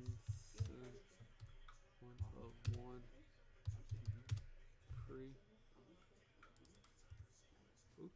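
Computer keyboard typing and mouse clicking, scattered short clicks, with quiet mumbled speech in between.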